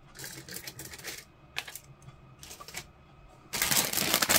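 Plastic model-kit sprues in clear bags clicking and rattling as they are handled and set down, in three short bursts with a single sharp click between them. Near the end a plastic bag is picked up and crinkles loudly.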